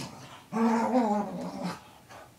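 A dog giving one long, wavering growl-like grumble, about a second long, as it rolls on its back on the carpet in a playful post-bath frenzy.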